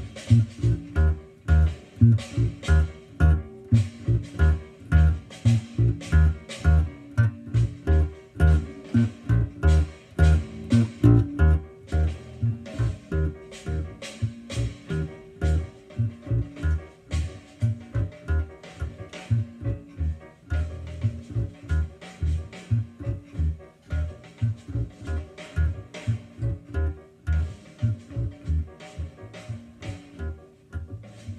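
Electric bass guitar played fingerstyle: a steady stream of plucked low notes in a repeating jazz line.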